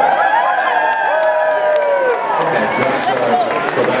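A crowd of people cheering and calling out, several voices holding long drawn-out notes, one of them falling in pitch about two seconds in.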